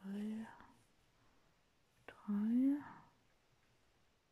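A woman's voice murmuring softly twice, two short sounds about two seconds apart, the second rising in pitch.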